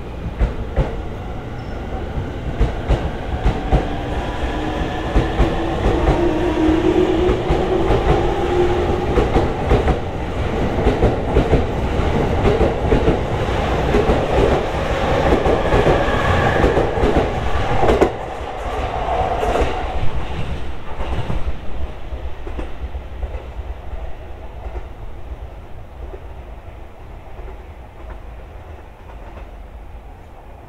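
JR East E231-series electric train accelerating away past the platform: the traction motors give a whine that rises in pitch over a low rumble, while the wheels clack over the rail joints. It builds in loudness, drops suddenly about two-thirds of the way through, then fades as the train leaves.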